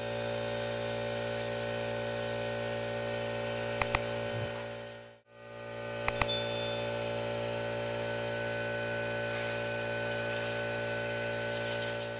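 A steady, droning background music bed holding one sustained chord, which fades out about five seconds in and fades back up. A short click comes a little before that, and a bright bell-like ding about six seconds in.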